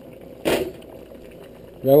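A single short clatter of kitchenware about half a second in.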